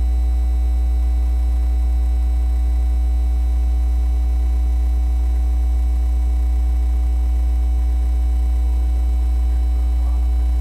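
Steady, loud, low electrical mains hum in an audio feed, with fainter steady higher tones above it. It is unchanging throughout, and nothing else is heard.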